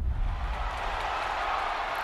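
A steady rushing roar of noise, with a low rumble underneath that thins out.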